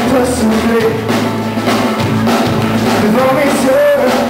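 Live rock band playing, with a male voice singing a wavering melody over it.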